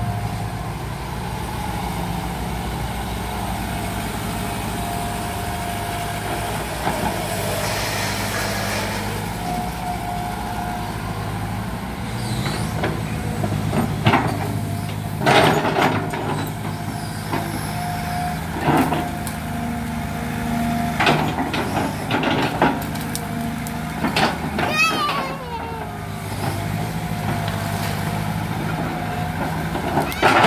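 Kobelco Yutani SK045 excavator running steadily, with a thin whine that comes and goes as the arm works. From about halfway through, the bucket digging into soil and tree roots brings a series of sharp knocks and cracks.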